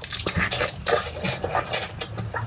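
Close-up wet chewing and lip-smacking as a person bites into and eats a piece of sauced meat, a quick run of many small clicks and squelches.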